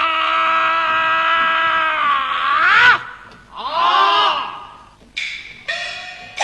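Male Peking opera jing (painted-face) singer singing a long held note in the forceful, full-throated jing style. About three seconds in the note bends up and down, and a shorter sung phrase follows. Near the end the opera accompaniment comes in.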